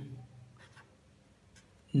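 Faint scratching of a pen writing a numeral on paper, in short strokes.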